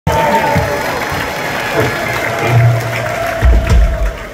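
Amplified live rock band playing loosely on stage, a held note ringing over heavy low drum or bass thuds that stop abruptly at the end, with the audience applauding.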